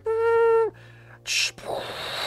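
A man's vocal sound effect of a sci-fi unveiling: a held, steady 'ooh' tone that dips at the end, then a short 'tss' and a long breathy hiss imitating steam escaping.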